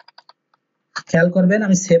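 A quick burst of about five computer keyboard keystrokes, then a man's voice speaking from about a second in.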